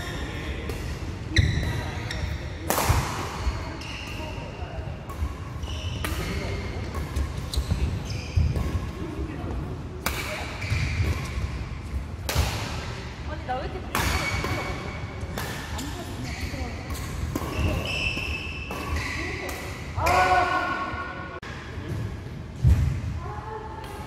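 Badminton rally on an indoor court: sharp hits of rackets on the shuttlecock at irregular intervals every second or two, with short high squeaks of court shoes in between and occasional voices of players.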